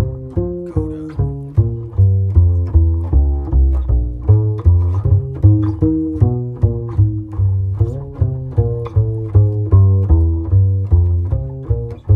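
Solo upright double bass played pizzicato: a continuous walking line of plucked notes, a few each second, each note ringing and decaying before the next. The line is an etude moving through chromatic passing tones and diminished passing chords over a simple chord progression.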